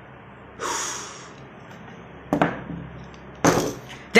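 A man's sharp, breathy exhale about half a second in, then two sharp knocks, the louder one near the end.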